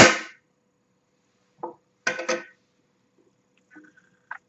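Metal scissors set down on a hard stone tabletop: one loud clang right at the start that rings briefly, then a couple of softer knocks about two seconds in.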